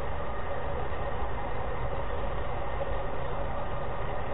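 Steady low rumble with a hiss over it, the background noise of the lecture recording, with no distinct event.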